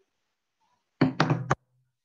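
Three or four quick, loud knocks in about half a second, about a second in.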